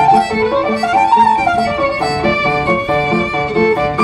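Solo violin playing a classical melody, sliding between some notes, over a piano accompaniment of steadily repeated lower chords.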